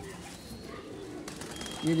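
Domestic pigeons cooing faintly in the background, with a man's voice starting near the end.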